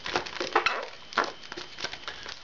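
Inflated latex modelling balloons rubbing and squeaking against each other and against the hands as a twisted balloon tulip is adjusted: a run of short, irregular squeaks and creaks.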